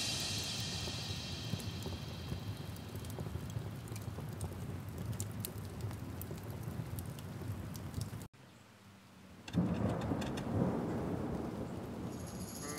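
Faint rain ambience, an even hiss of rain with scattered small crackles, laid between songs. It cuts out completely for about a second around eight seconds in, then comes back a little louder.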